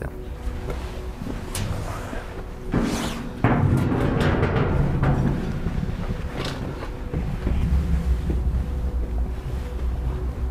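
Knocks and booming thuds of footsteps and hands on a steel stair-ladder being climbed, getting louder and busier from about three and a half seconds in.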